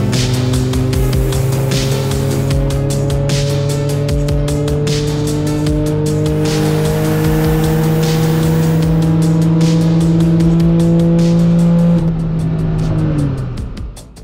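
Twin-turbo flat-six of a 9ff-tuned Porsche 911 (991.2) Turbo S with an aftermarket exhaust, making about 950 PS, on a full-throttle dyno power run. The engine note climbs steadily in pitch for about twelve seconds, then drops and fades as the throttle closes and the car coasts down on the rollers.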